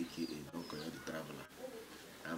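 A man's faint voice talking, with birds chirping in the background: a few short, high chirps in the first half.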